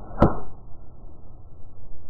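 A golf club striking a ball: one sharp click about a quarter of a second in.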